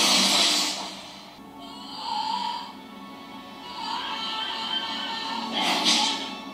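Dramatic anime soundtrack music, with a sudden loud burst of noise at the start and another near the end.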